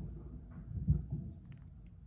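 Faint handling of a foil trading-card pack in the fingers, with a few small crinkles and clicks around the middle.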